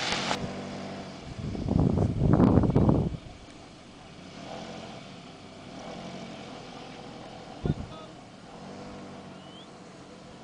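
A car's engine running steadily at low revs as the car creeps along slowly. About two seconds in there is a loud rush of noise, and near the end a single sharp knock.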